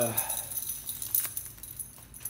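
Crisp, crackly rustling of a handful of alcohol prep pad packets being handled, with a few light clicks and ticks around the middle.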